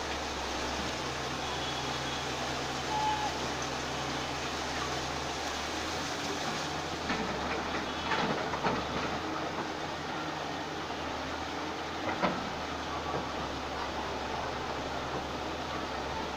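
Hitachi tracked excavator working at a distance: a steady diesel rumble mixed with city traffic noise, with a few sharp knocks about eight and twelve seconds in.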